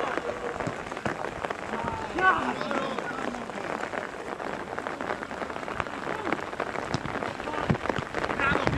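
Steady crackling outdoor noise with short, distant shouts from footballers on the pitch.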